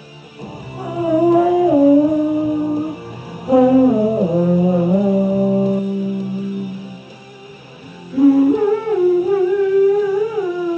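A man singing long, drawn-out notes into a microphone in three phrases, the first two stepping down in pitch, over a quiet backing track.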